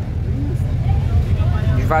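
Steady low rumble of a moving city bus, engine and road noise heard from inside the cabin, with faint passenger voices.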